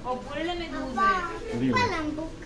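A young child's high-pitched voice chattering and calling out in short bursts, too unclear to make out as words.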